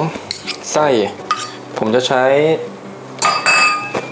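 Metal spoon clinking against stainless steel bowls while scooping minced pork, with a ringing clink near the end.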